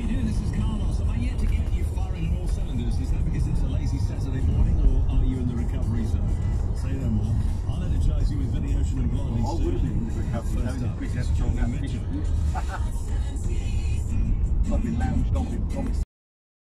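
A car radio playing music with a voice over it, heard from inside the cabin of a moving car, over the steady low rumble of the engine and tyres on the road.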